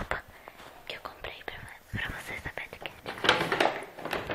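A person whispering, with a few small clicks and knocks from a phone being handled.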